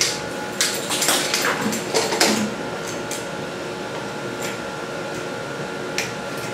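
Knocks and clicks of an inch-and-a-half flexible hose being handled and its cam fitting pushed onto the cart's supply connection, several in the first two seconds or so. A steady background hum follows.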